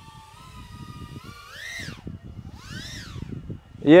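BetaFPV Pavo20 Pro cinewhoop's brushless motors and 2.2-inch propellers whining, running on a 2S battery. The pitch holds steady, rises sharply to a peak a little under two seconds in, falls, then swells up and back down again about three seconds in as the throttle is punched and released.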